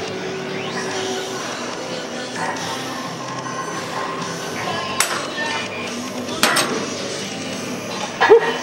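Background music, with two sharp metallic clinks from a cable machine's weight-stack plates: one about five seconds in and another a second and a half later.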